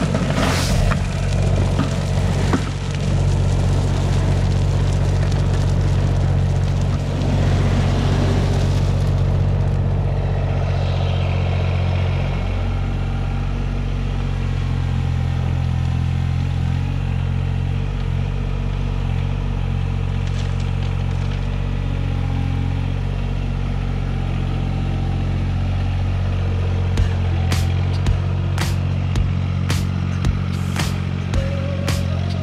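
Mahindra eMax 20S subcompact tractor's diesel engine running steadily. For the first nine seconds or so, gravel pours and rattles out of the front-end loader bucket onto a tarp. A few sharp clicks come near the end.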